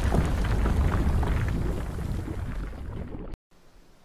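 Intro logo sound effect: a loud, deep rumble laced with crackling that fades over about three seconds, then cuts off abruptly, leaving only faint hiss.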